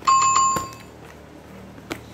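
A bright bell-like metallic ding, struck twice in quick succession and ringing out within about a second, followed by a single light click near the end.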